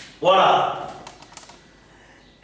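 A man's voice saying a brief word, followed about a second in by several light quick taps of a marker tip on a whiteboard.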